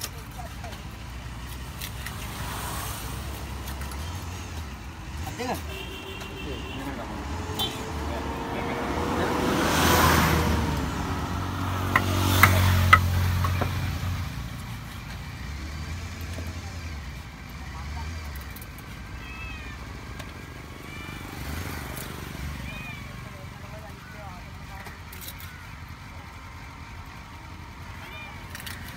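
A large knife chopping through fish on a wooden chopping block, with sharp knocks about twelve and thirteen seconds in. Voices in the background, and an engine swells and fades, loudest about ten seconds in.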